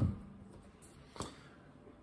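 The tail of a strummed open E minor chord on a guitar dying away in the first half-second, then a quiet room with a single small click just past a second in.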